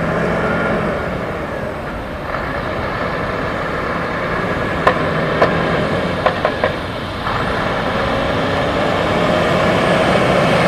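Scania 124L 470 truck's inline-six diesel engine running as the tractor unit and semi-trailer drive slowly past, its note rising gently near the end. A handful of sharp clicks come about halfway through.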